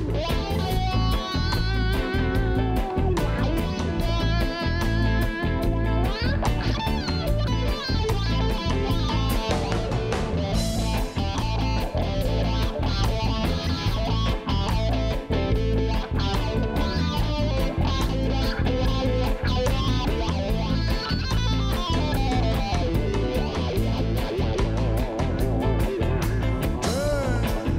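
Reggae band playing live with no singing: an electric guitar plays a lead line of bent, wavering notes over a steady bass and drum groove, with keyboard.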